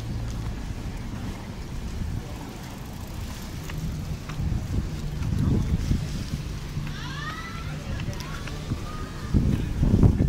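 Outdoor city street ambience while walking: a steady low rumble of traffic and wind on the microphone, with passers-by's voices in the background and a brief high rising sound about seven seconds in. A louder gust of low rumble comes near the end.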